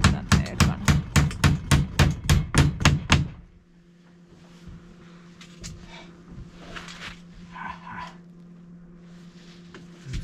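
Hammer nailing a wooden ceiling batten overhead in quick, even blows, about four a second, that stop about three seconds in.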